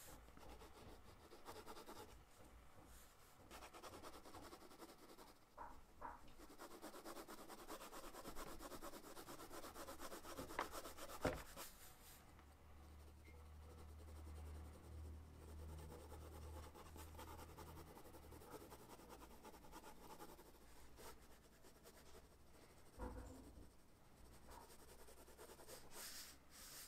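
Faint pencil shading on sketchbook paper: soft, continuous scratching and rubbing strokes, with one sharp tap about eleven seconds in.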